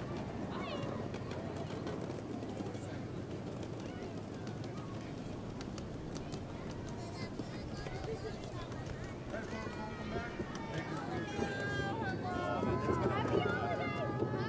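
A miniature ride-on train running with a steady low hum, under crowd chatter; high-pitched children's voices grow louder from about two-thirds of the way in.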